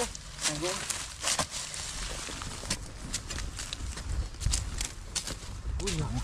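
Hand hoes chopping into stony soil: irregular sharp knocks and scrapes of the blades striking earth and stones.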